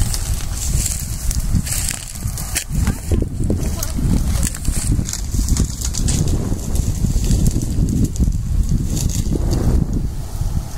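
Wind rumbling on a phone's microphone, a heavy steady buffeting, with scattered brushing and rustling sounds over it.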